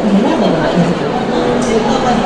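Indistinct voices and crowd chatter in a busy indoor hall.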